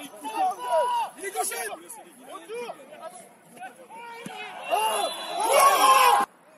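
Men's voices calling and shouting across a football pitch during play, quieter in the middle and louder in the last second or so.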